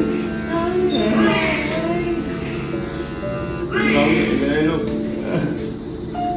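Soft background music with long held notes, over which a newborn baby cries in bursts about every three seconds.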